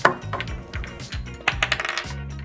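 Small game pieces and wooden craft sticks clicking on a board-game board and tabletop. There is one sharp click at the start and a quick run of clicks near the end.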